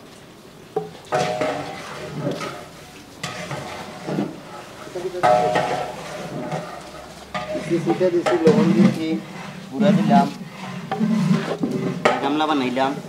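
A long wooden pole stirring and turning straw cattle feed in a large concrete trough: irregular rustling, scraping strokes. Indistinct voices can be heard over it in the second half.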